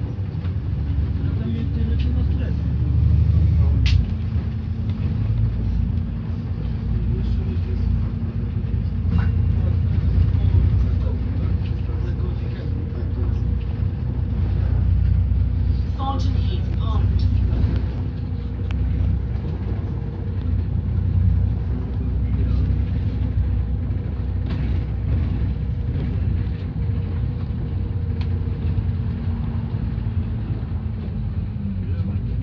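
Double-decker bus driving, heard from the upper deck: a loud, continuous low engine and road rumble with a steady drone, its note shifting about four seconds in, and occasional short rattles from the bodywork.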